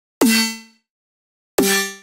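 Snare drum sample run through Ableton's Corpus resonator in String mode. There are two hits about a second and a half apart, each a sharp attack followed by a metallic ring like a piano string that dies away within about half a second. The second hit rings a little lower.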